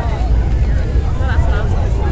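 Far-off Atlas V rocket climbing after launch, its RD-180 first-stage engine heard as a steady low rumble. Spectators' voices chatter faintly over it.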